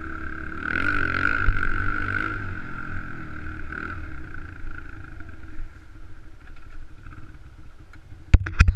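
Honda XR100R's single-cylinder four-stroke engine revving as the dirt bike is ridden, the revs rising and falling about a second in, then running quieter for the rest of the time.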